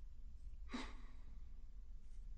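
A single faint breath, about a second in, over a low steady hum.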